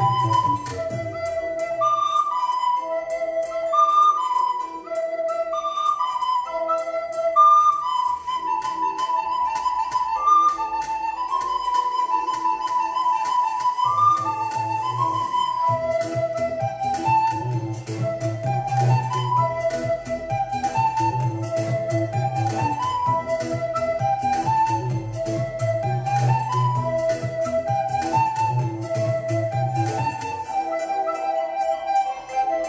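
Recorder playing a pop-song melody in quick, short notes over a backing track with a beat. The backing's bass drops out early and comes back about halfway through.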